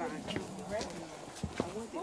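Indistinct talking of several people in a group, quieter than nearby speech, with a few short taps scattered through it.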